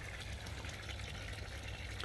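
Faint, steady bubbling and trickling of a koi pond with its air stones and filters running.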